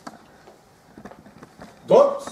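Quiet room tone with a few faint clicks during a pause in a lecture; a man's voice starts speaking loudly just before the end.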